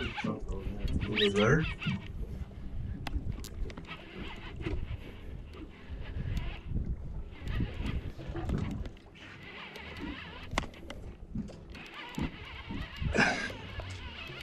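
Muffled, indistinct voices, at the start and again near the end, over a constant low rumble and scattered clicks and knocks.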